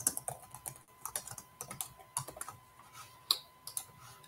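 Computer keyboard typing: a run of quick, irregular keystrokes.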